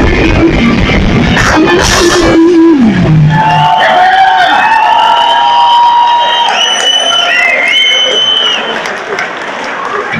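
Punk rock band playing live at full volume with electric guitar and drums; about two and a half seconds in the song ends on a low note that slides downward. After that, high sustained tones with short rising and falling glides ring over crowd noise, fading a little near the end.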